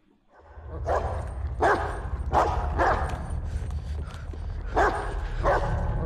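A large dog barking repeatedly, about six barks spread over a few seconds, heard in a film soundtrack over a steady low rumble.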